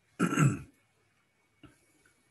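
A man clearing his throat once, a short harsh burst, followed about a second later by a faint click.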